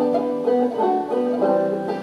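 Solo banjo picked between sung verses, a run of plucked notes changing about every half second.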